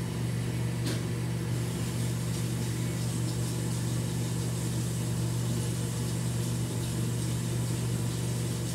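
Steady low machine hum in a small bathroom, with a single click about a second in.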